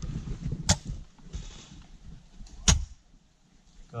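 Two sharp shots from airsoft bolt-action sniper rifles, about two seconds apart.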